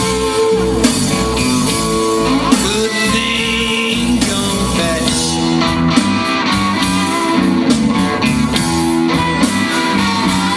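A live blues band playing: electric guitar and bass guitar carrying a steady groove.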